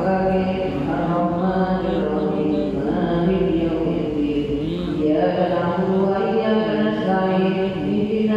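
A man reciting the Quran aloud in a slow chanted melody. He holds long, level notes with small ornamented turns in pitch, broken by brief pauses for breath.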